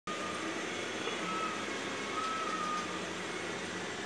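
Steady mechanical background noise, a constant hiss and hum, with a faint brief thin tone twice.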